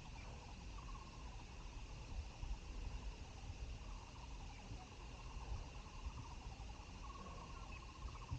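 Faint open-air ambience: a steady high insect drone, with a few short trilling calls about a second in, near four seconds and near the end, over a low rumble.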